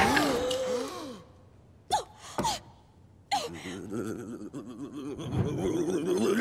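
A cartoon old man's voice: three sharp gasps after a short hush, then a wavering, wheezy chuckle that swells toward a full laugh.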